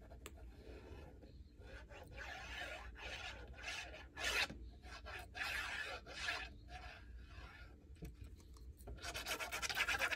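Fine-tip liquid glue bottle scratching and rubbing along the edge of a paper page as glue is laid down, with paper handling: faint, irregular scratchy strokes, growing louder and denser near the end.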